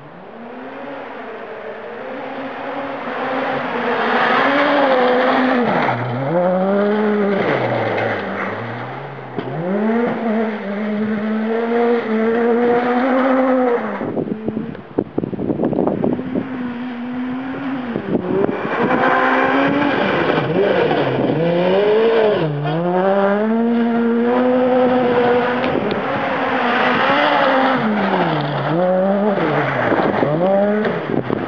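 A Ford Fiesta R2 rally car's naturally aspirated 1.6-litre four-cylinder engine is driven hard on gravel. It revs high and falls back again and again as the car is worked through the gears and lifts off for corners. About halfway there is a short spell of sharp crackling.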